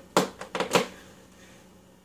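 A few sharp clicks and knocks as a guitar cable's jack is plugged into a Fender Mustang combo amp, then only a faint steady hum: the amp gives no sound, which is taken to mean this amp isn't working.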